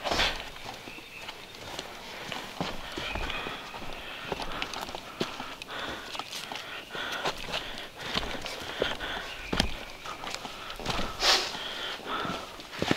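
Hikers' footsteps on a dirt and leaf-litter forest trail, an irregular run of steps and scuffs with one louder knock near the end.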